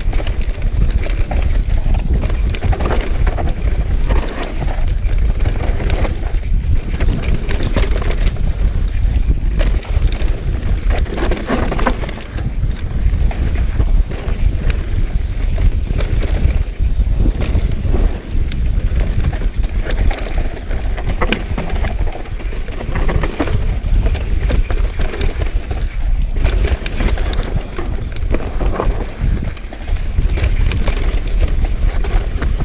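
Mountain bike descending a dirt trail at speed: steady wind rumble on the bike-mounted microphone, tyres running over dirt, and frequent clacks and rattles from the bike as it goes over bumps.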